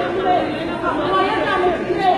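Speech only: several people talking at once, their words overlapping and indistinct.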